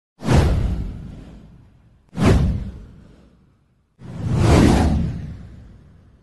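Three whoosh sound effects accompanying an animated title card. The first two hit suddenly and fade away over a couple of seconds each. The third swells up more gradually before fading out.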